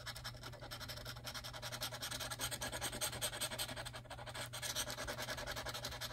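A metal-tipped scratcher tool scraping the coating off a scratch-off lottery ticket in quick, even back-and-forth strokes, many to the second.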